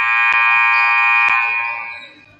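Basketball scoreboard horn sounding once in a long, loud buzz that fades near the end, with two sharp knocks under it.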